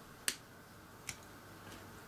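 Two sharp clicks about a second apart, the first louder, as a small screwdriver works a tiny screw into a plastic model-kit suspension part.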